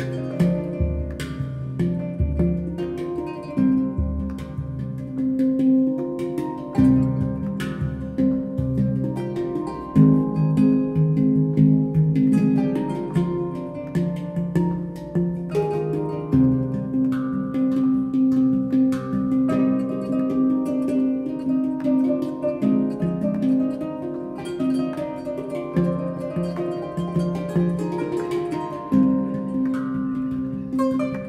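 Instrumental duet of a kora and a handpan: the kora's strings are plucked in a flowing melody while the handpan's fingered notes ring on beneath it.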